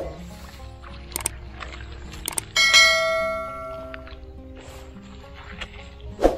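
Background music with two sharp clicks followed by a bright bell ding about two and a half seconds in, ringing out for about a second and a half: the click-and-ding sound effect of a subscribe and notification-bell animation.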